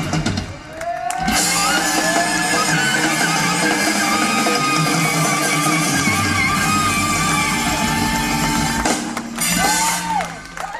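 Live blues-rock band playing, with electric guitar and drum kit. The music drops back briefly about half a second in, and the full band comes back in just after a second.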